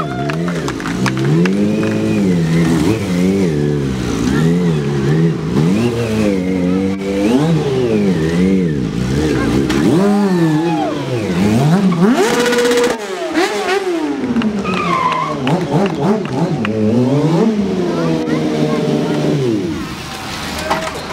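Stunt sportbike engine revving up and down over and over, its pitch rising and falling every second or two, held steady briefly about two-thirds of the way through.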